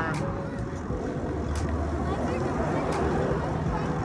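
Steady rushing wind on the microphone and tyre noise from a mountain bike rolling along pavement, with road traffic behind it and a few faint clicks.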